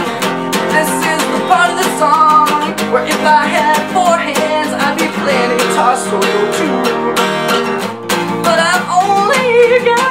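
A Takamine acoustic guitar strummed steadily while a man sings loudly over it.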